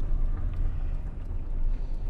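Car driving, heard from inside its cabin: a steady low rumble of engine and road noise.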